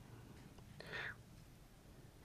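Near silence: room tone, with one short soft hiss about a second in.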